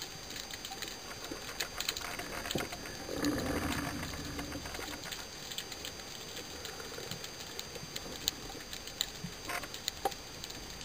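Underwater ambience picked up by a diver's camera: scattered small clicks and crackles, with a low hum for about a second and a half starting around three seconds in.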